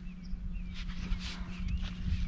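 Faint chirping bird calls over soft rustling and a steady low hum.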